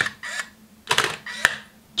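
Canon EOS 5 film SLR taking a flash picture in full auto mode, its pop-up flash raised: a click at the start, a short cluster of mechanical clicks about a second in, and one sharp click about half a second later.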